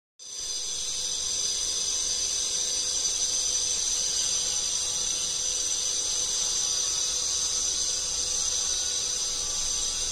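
A steady, high-pitched chorus of insects that holds unchanged throughout.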